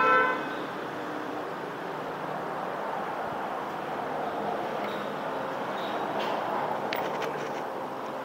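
Steady noise of passing road traffic, with a vehicle horn sounding briefly right at the start. A few faint clicks come near the end.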